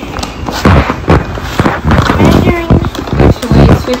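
A rapid series of knocks and thumps, with voices in the second half.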